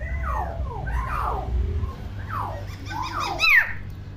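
Common hill myna giving a run of whistled calls that glide up and down in pitch, the loudest a high sweeping whistle about three and a half seconds in.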